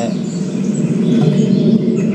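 Bird chirps from a bird video played through a device speaker, faint above a louder steady, rough low hum.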